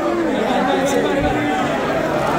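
Crowd of fans talking and shouting over one another, many voices at once.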